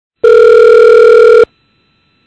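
Telephone ringing tone heard down the phone line while the call is placed: one loud, steady tone lasting a little over a second, which stops abruptly.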